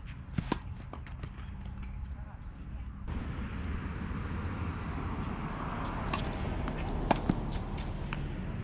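Tennis ball being struck by rackets and bouncing on a hard court during a groundstroke rally. There are sharp pops about half a second in and several more between six and seven and a half seconds, the loudest around seven seconds. Under them, a steady background rush grows louder about three seconds in.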